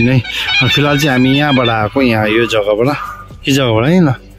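A man's voice, loud, with long glides in pitch and a rise and fall near the end.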